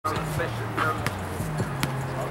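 Basketball bouncing on a concrete court, a few sharp irregular thumps, over music with a steady bass line and players' voices.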